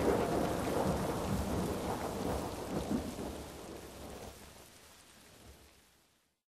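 The closing tail of a Eurodance remix after the beat has stopped: a wash of noise that fades away over about four seconds to silence.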